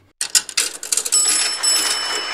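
Cash register sound effect: a rapid mechanical clatter, then a bell ding that rings on and slowly fades.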